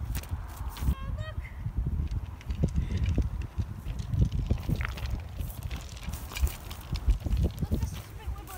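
Wind rumbling on the microphone of a handheld camera while walking through long grass, with irregular footfalls and knocks.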